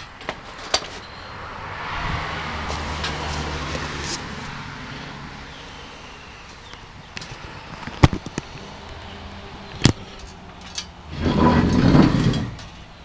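A car going past on a nearby road, its sound swelling over a couple of seconds and then fading away. Later come a few sharp knocks from the cardboard boxes being handled.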